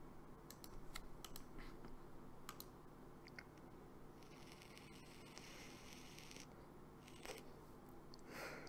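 Near silence over a low hum, with a few faint computer keyboard or mouse clicks in the first few seconds and a soft hiss for about two seconds in the middle.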